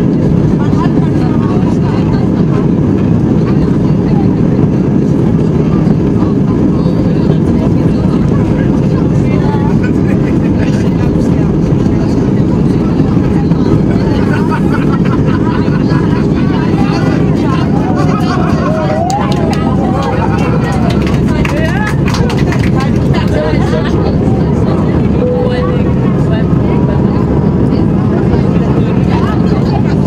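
Airbus A319's twin jet engines at takeoff thrust, heard from inside the cabin over the wing: a loud, steady noise through the takeoff roll and lift-off.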